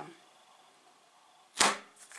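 Near silence, then one short, sharp contact sound about one and a half seconds in, as a hand handles the plastic control panel and peeling sticker of a multicooker.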